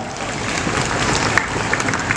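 Audience applauding: many hands clapping steadily, in response to a speaker's closing line.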